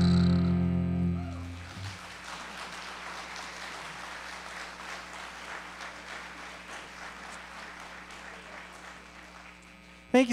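The last chord of a song on acoustic guitar and bowed cello rings out and dies away over the first second or two, then an audience applauds, the clapping slowly thinning out.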